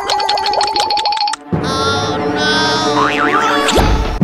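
Comic cartoon sound effects over music: a rapid, evenly pulsing effect for about a second and a half, then after a brief break a wobbling, sliding effect with a rising slide near the end.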